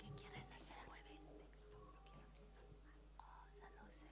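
Quiet, indistinct whispering and low murmured talk between two people, over a faint steady electrical hum and a thin high whine.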